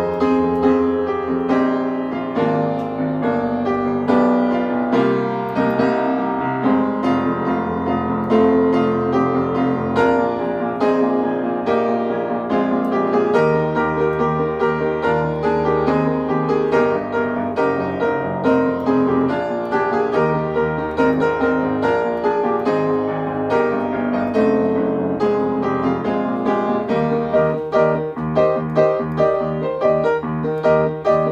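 Solo upright acoustic piano playing an arranged pop song, with melody over chordal accompaniment. The rhythm becomes more regular and accented in the last few seconds.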